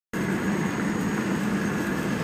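Steady low hum with an even hiss, the constant background noise of the room, cutting in just after the recording starts.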